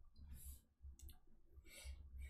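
Faint clicks and short scratchy strokes of a stylus writing on a tablet, with one sharp click about a second in.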